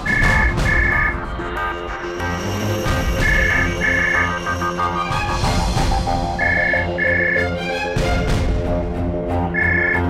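A landline telephone ringing in the double-ring pattern, ring-ring then a pause, four times about three seconds apart, over dramatic background music with a low pulsing beat.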